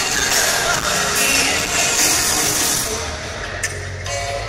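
Live pop band music played on an arena stage, heard from far up in the stands, thinning out a little about three seconds in.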